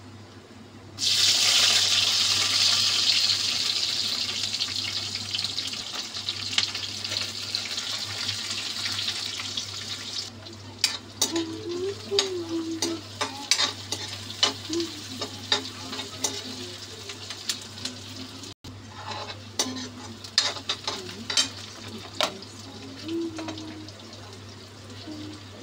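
Sliced onions dropped into hot oil in a kadhai, setting off a loud sizzle about a second in that slowly dies down. From about ten seconds on, a metal spatula scrapes and clicks against the pan as the onions and green chillies are stirred, over continued frying, with a steady low hum underneath.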